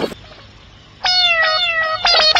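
After a quiet second, a cat meows twice in quick succession, each meow falling in pitch.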